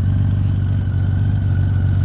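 1998 Honda Valkyrie's flat-six engine idling steadily while it warms up, through aftermarket pipes with the baffles fitted.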